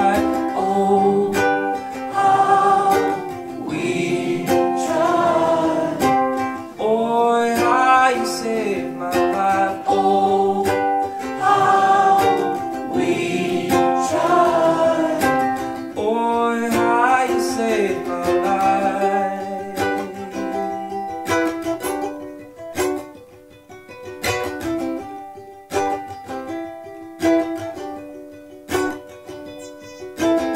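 Live song: a man singing over a strummed ukulele. About twenty seconds in the singing drops away and the ukulele strumming carries on more quietly.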